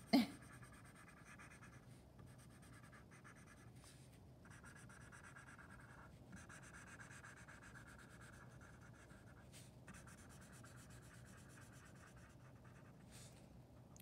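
Felt-tip marker scratching faintly across paper as an area is coloured in, in runs of strokes broken by short pauses.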